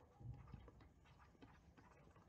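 Near silence, with a few faint taps of a stylus writing on a tablet screen in the first half-second.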